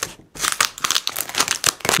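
A yellow plastic mailer package being torn open by hand, a quick run of crinkling and ripping plastic that starts after a brief pause.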